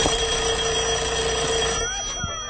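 Telephone bell ringing: one long ring that starts sharply and cuts off shortly before the end.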